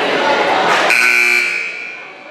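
Crowd chatter in a gymnasium, cut across about a second in by a scoreboard buzzer. The buzzer sounds loudly for about half a second and then dies away in the hall's echo.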